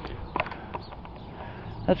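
A few light knocks and ticks from someone walking with a hand-held camera, over a low steady hum.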